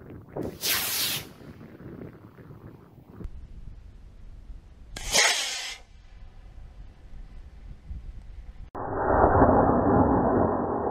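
Estes model rocket on a small black-powder A8-3 motor launching: a short hissing whoosh about half a second in, and another around five seconds in. From near nine seconds a louder, duller rushing noise follows.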